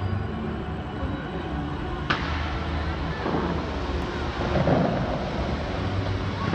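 Bellagio fountain show: water jets rushing and spraying across the lake, with one sharp crack about two seconds in.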